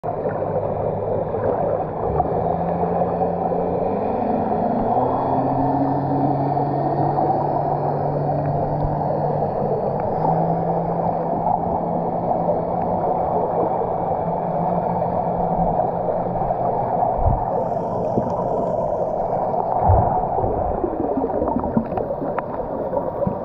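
Underwater sound on a coral reef picked up by an action camera: a dense, steady rush of water noise with a low hum underneath that shifts in pitch several times. There are a couple of dull knocks near the end.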